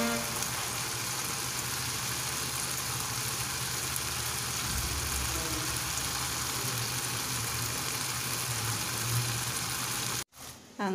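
Thick camel meat masala sizzling in a nonstick kadai on a gas stove: a steady, even hiss, with a faint low hum underneath.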